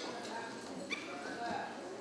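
Faint voices in a large church hall, with a short click about a second in.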